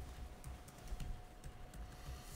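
Faint, scattered clicks of typing on a laptop keyboard over quiet room tone.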